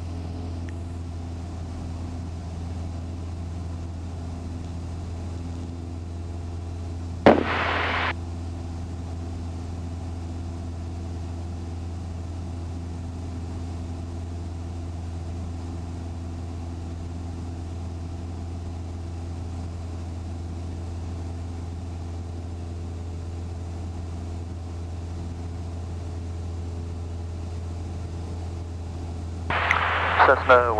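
Single-engine Cessna's piston engine and propeller droning steadily in flight. A short, loud burst of noise cuts in about seven seconds in.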